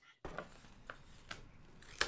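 Faint handling noise from a handheld microphone being picked up and brought to the mouth: a few soft clicks and rubs about half a second apart over a low hiss.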